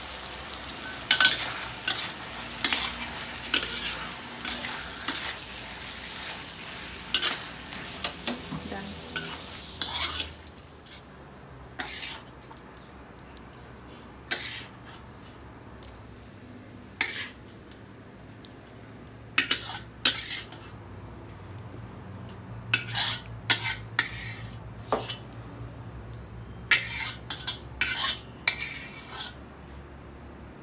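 A metal spatula scraping and clinking against a wok as chicken and potato stew is stirred over a light sizzle, busy for about the first ten seconds. After that come sparser knocks and scrapes as the food is scooped out into a stainless steel serving pan.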